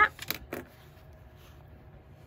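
Quiet room tone, with a few light clicks in the first half second.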